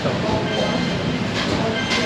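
Steady rumbling background noise with a soft voice talking under it.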